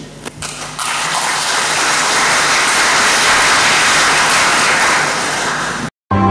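Audience applauding: a few first claps, then steady dense clapping that cuts off abruptly near the end.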